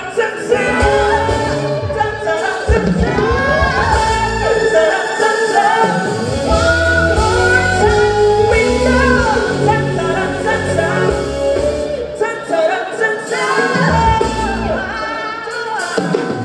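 Singers performing a song live with a backing band of keyboards and drums, the voices carrying a melody over steady bass notes.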